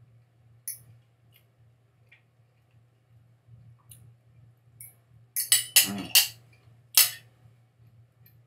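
Eating from a plate with a fork: a few faint clicks, then a cluster of louder clicks and smacks about five and a half to six seconds in, with a brief hum of the voice, and one more sharp click about seven seconds in.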